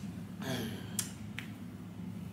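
A person's breath, followed by two short sharp clicks about half a second apart.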